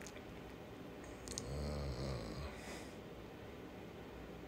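A man's low, drawn-out "uhh" of hesitation, about a second long, just after a short mouth click.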